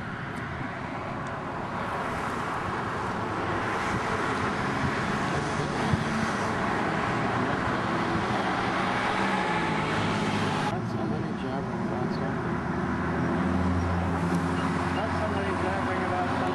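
Road traffic: cars and engines passing steadily on a busy street, with gliding engine tones as vehicles speed up. About eleven seconds in the sound changes abruptly, and near the end a nearby vehicle's engine rumbles louder and lower.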